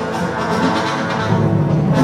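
A live band plays an instrumental passage: trumpet and trombone lead over upright double bass, drums and acoustic guitar.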